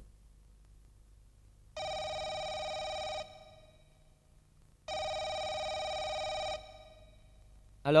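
Landline telephone ringing twice, each ring about one and a half seconds long, before the call is answered.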